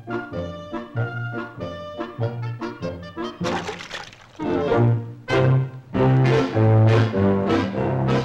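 Orchestral cartoon score led by brass, with trombone and trumpet over a bouncing bass beat. It swells much louder about halfway through.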